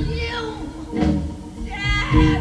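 Live band playing: a woman's sung vocal with drawn-out sliding notes over keyboard, bass and drum hits, one hit about a second in and another near the end.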